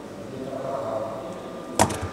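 Faint, indistinct voice in the room, then a single sharp click near the end, louder than anything else.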